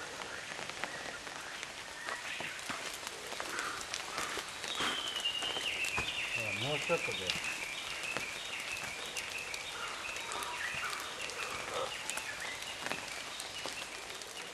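Outdoor crackling patter, with a high animal call made of short notes stepping down in pitch, repeated for several seconds from about five seconds in. A faint voice is heard briefly around the middle.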